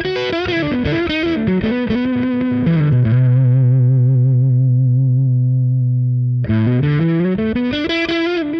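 Overdriven electric guitar through a PRS HDRX 20, a 20-watt Plexi-style valve head with 5881 power valves. A quick run of lead notes steps down in pitch to a low note held with vibrato for about three and a half seconds, then fast licks start again.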